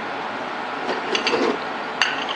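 A few light metallic clinks and knocks about a second in, as metal shop parts are picked up and handled on a workbench. A steady hiss runs underneath.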